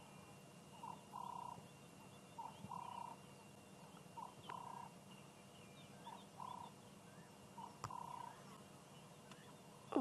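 A faint bird call in the bush: a short note followed by a longer one, repeated about every second and a half.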